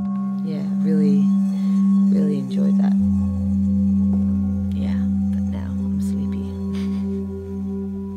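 Music of sustained drone tones, a lower drone joining about three seconds in, with a few gliding tabla strokes over them.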